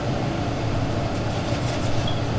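Steady room tone: a low hum with an even hiss over it, no distinct events.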